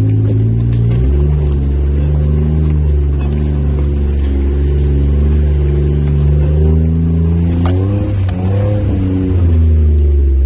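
Jeep engine heard from inside the cab, running at low speed as it crawls a rocky trail. Its pitch steps up about a second in and rises and falls near the end, with a sharp knock shortly before.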